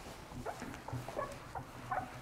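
Whiteboard eraser wiped across the board in quick strokes, giving a run of faint short squeaks.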